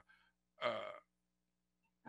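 Speech only: a man's single hesitant "uh", held on one pitch for about half a second, a little after the start.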